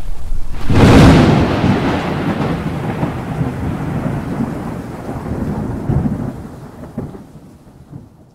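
A loud thunderclap a little under a second in, followed by a long rolling rumble over a rain-like hiss that slowly fades away.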